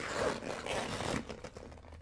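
Hands pulling open and handling a Longchamp bag: rustling and scraping of the bag's material and zipper, busiest in the first second or so, then quieter.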